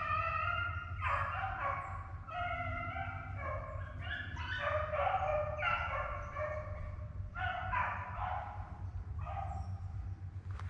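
A pack of rabbit hounds baying as they run a rabbit's track, with several drawn-out, overlapping cries one after another.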